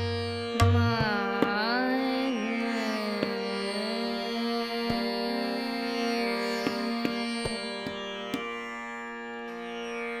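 Hindustani classical vilambit khayal in raga Bhoopali. A female voice sings a gliding, ornamented phrase about a second in, over a steady tanpura drone and harmonium, with sparse, slow tabla strokes.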